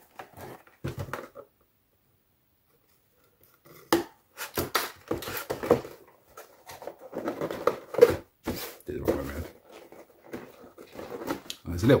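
Cardboard model-kit box being handled and turned over on a cutting mat: a few short rustles, a sharp knock about four seconds in, then irregular handling of the box lid.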